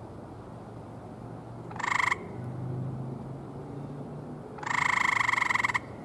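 Gray tree frog calls: two pulsed, musical trills, a short one about two seconds in and a longer one of about a second near the end.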